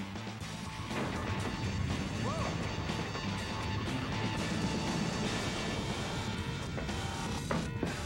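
Cartoon action soundtrack: background music under a dense, steady rush of sound effects. A short rising tone sounds about two seconds in, and a sharp hit comes near the end.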